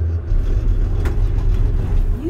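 Low, steady rumble of a gondola lift cabin running into its station, heard from inside the cabin, with one sharp click about a second in.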